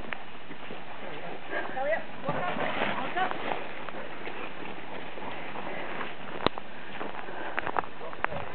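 Footsteps of people and sheep walking on a dirt road. Voices talk in the background in the middle, and there is a single sharp click a little over six seconds in.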